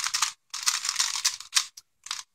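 Stickerless DaYan Pyraminx, a plastic twisty puzzle, turned quickly by hand for its first turns. Its plastic pieces click and rattle in rapid bursts with short pauses between.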